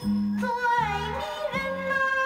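Instrumental passage of a Mandarin pop song played from a vinyl record: a melody line that slides and wavers between notes over low accompaniment notes recurring about every three quarters of a second.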